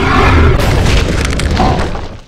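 Loud, deep rumbling boom sound effect in a cartoon soundtrack, fading near the end.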